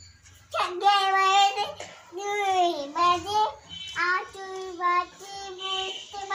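A small child singing in a high voice: from about half a second in, a long held note, then a note that dips and rises, then a string of shorter held notes.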